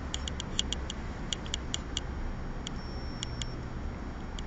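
Light, irregular ticks of a brush tip dabbing dots of paint onto paper, several a second in clusters with a short gap in the middle. A steady low hum runs underneath.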